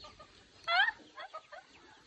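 A chicken gives one short, high cluck under a second in, followed by a few faint, softer sounds.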